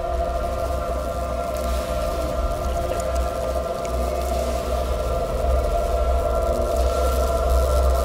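Eerie sustained film-score drone: several long held tones over a steady deep rumble, slowly growing louder.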